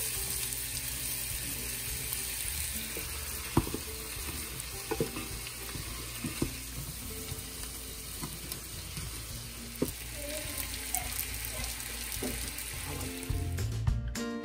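Ground beef and sliced onions frying in pans with a steady sizzle, while a plastic meat chopper breaks up and stirs the beef, giving a few short taps and scrapes against the pan.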